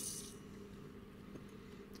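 Soft rustle of gloved hands handling a scooter clutch basket in the first moment, then a quiet stretch with a faint steady low hum.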